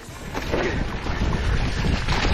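Wind buffeting an action camera's microphone, over the rolling noise of a mountain bike riding down a dirt singletrack, swelling about half a second in.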